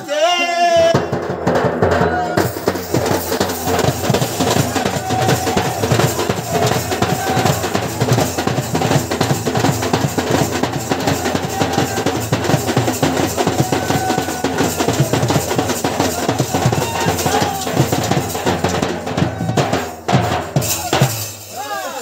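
Village band drums, including a large bass drum beaten with a stick, playing a fast, steady dance beat. The drumming breaks off near the end.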